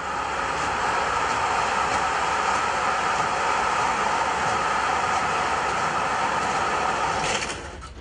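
Sliding tarpaulin roof of a curtainside truck trailer rolling along its side rails: a steady rolling rumble that stops about seven seconds in.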